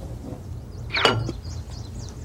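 A papaya slice dropped into an empty glass jar: one quick swish that falls in pitch, with a soft knock, about a second in, over a low steady hum.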